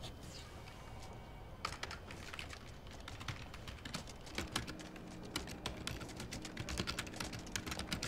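Typing on a computer keyboard: quick, irregular key clicks that start about a second and a half in and keep going.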